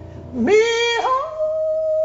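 A woman's gospel vocal swoops up into a loud held note and breaks off about a second in, then a steady keyboard chord sustains.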